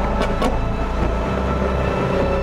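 Nissan GT-R R35 driving, a rush of car and road noise that swells and fades over background music, with two short sharp clicks near the start.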